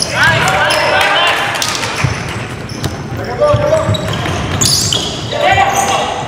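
Basketball dribbling and bouncing on a hardwood gym floor, with repeated thuds, while players call out in the echoing hall.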